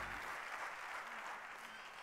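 Live theatre audience applauding, the clapping slowly dying away.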